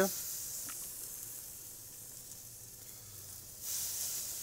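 Marinated chicken breasts sizzling as they are laid on hot barbecue grill grates: a hiss that starts loud and fades, then flares up again near the end as a second piece goes down.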